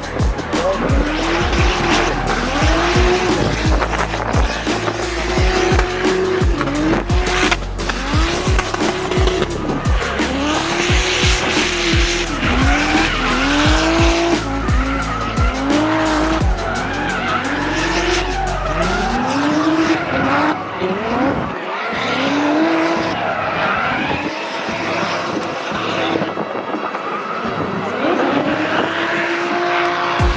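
Toyota 2JZ straight-six in a Nissan S13 drift car revving up and dropping back over and over, roughly once a second, as the driver works the throttle through a drift, with tyres squealing and sharp crackles throughout.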